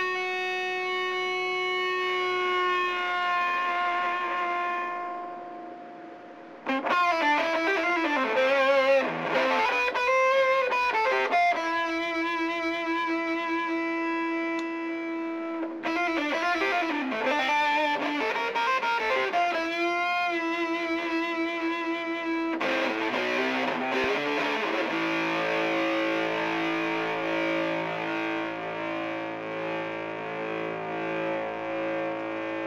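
Electric guitar played through a Skreddy fuzz pedal. A held note rings out and fades over about six seconds, then single-note lead lines with bends and vibrato and long sustained notes follow. A thicker held fuzz chord comes in near the end.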